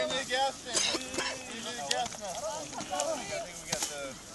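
Several people talking indistinctly in the background, with a few short clicks.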